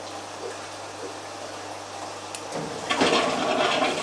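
Water rushing from a pump's outlet pipe into a drain, starting about two and a half seconds in and growing louder. It is the first water pumped from a barrel of RO water, run to waste to flush out the pipe.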